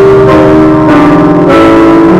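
Slow piano music at a steady, loud level, its sustained notes changing about every half second.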